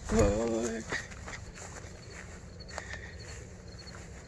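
A man's drawn-out call in the first second, over a deep thump of phone-handling noise, then low rustling and handling noise with a few faint clicks.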